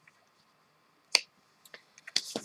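A single sharp click from handling tarot cards as the last card is set in the spread, followed by a couple of faint ticks.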